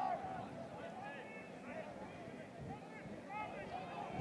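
Faint, distant voices calling out on a lacrosse field during live play, heard over a low steady background.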